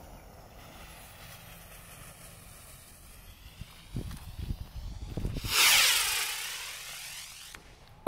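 A 4 oz bottle rocket: the lit fuse hisses faintly, a low rumble comes as it lifts off about four seconds in, then the rocket motor's loud rushing hiss swells and fades over about two seconds as it flies away. No bang.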